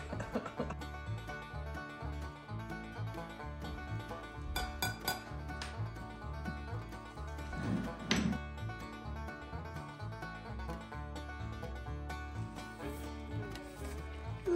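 Background music with a stepping bass line, over which a few short knocks sound as a spatula is worked through pasta salad in a ceramic dish.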